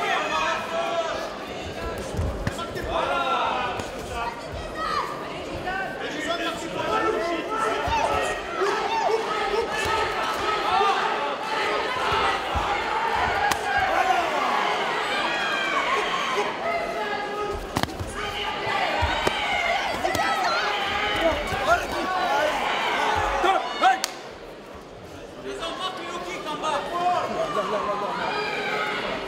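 Many voices of spectators and corner coaches shouting over one another at a kickboxing fight, with sharp thuds of gloved punches and kicks landing and feet striking the ring canvas scattered throughout. The shouting drops briefly a little before the end.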